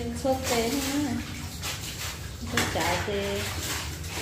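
Wet clothes being rubbed and swished by hand in water in a plastic tub, with irregular splashing and sloshing.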